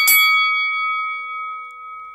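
Boxing-ring bell sound effect: struck twice in quick succession, then ringing on with a slowly fading tone.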